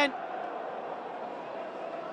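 Football stadium crowd noise: a steady wash of many distant voices, with no single sound standing out.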